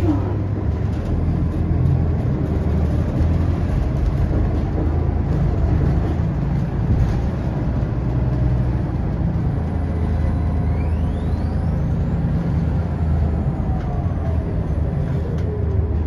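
City transit bus running along the street, heard from inside the passenger cabin: a steady low drone from the drivetrain, with a faint rising whine about ten seconds in.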